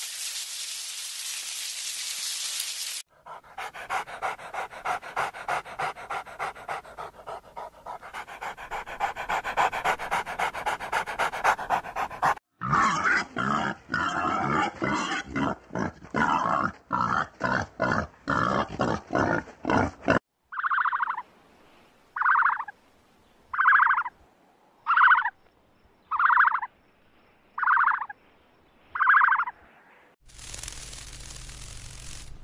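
A run of different animal sounds. After a brief steady hiss at the start, a dog pants rapidly and rhythmically, then a pig grunts repeatedly, and finally another animal gives seven short calls at an even pace, about one every second and a half.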